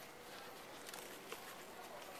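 Quiet outdoor background ambience: a faint, even hiss with a couple of soft clicks.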